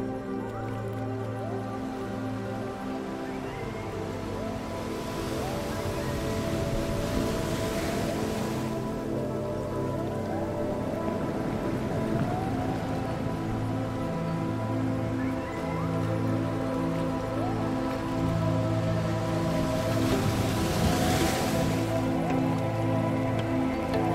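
Slow ambient meditation music: held, layered chords with low notes pulsing under them and soft little gliding tones. Twice, about five seconds in and again near twenty seconds, a surf-like wash of noise swells up and falls away.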